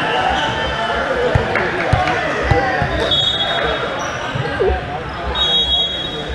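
Volleyball bounced on a hard sport-court floor: a few dull thuds about half a second apart, over the steady chatter of players and spectators in a large echoing gym.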